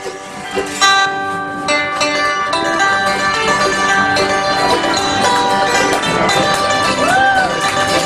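Acoustic bluegrass string band playing a hymn: several acoustic guitars strumming together with a small ten-string instrument strung with banjo strings. The full band comes in about a second in and plays steadily from there.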